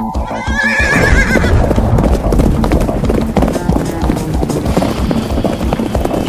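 Several horses galloping, hooves clattering rapidly, with a horse whinnying in a wavering call in the first second and a half.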